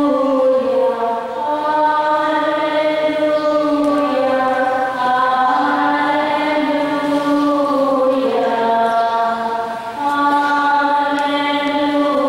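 A single voice singing a slow, chant-like hymn in long held notes that step up and down, with short breaks between phrases.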